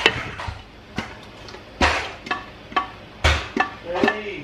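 A stainless steel Instant Pot inner pot knocking and clanking as it is picked up and handled over a jar and funnel. About seven sharp metal knocks come at uneven intervals, each with a short ring.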